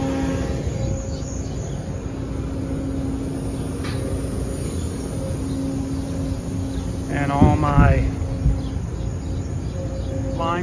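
Steady machinery hum with a low rumble and a constant low tone throughout, with a brief spoken phrase about seven seconds in.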